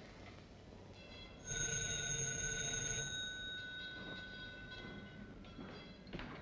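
Telephone bell ringing once, starting about a second and a half in and lasting about a second and a half, its tone lingering and fading away over the next two seconds.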